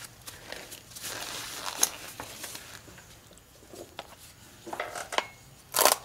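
Vinyl disposable gloves being pulled on and worked over the fingers: an irregular plastic crinkling and rustling with a few sharp clicks, busiest in the first few seconds and quieter in the middle. A louder rustle comes just before the end.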